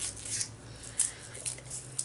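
Faint rustling with a few light clicks as paper packing is handled in a small cardboard box, over a low steady hum.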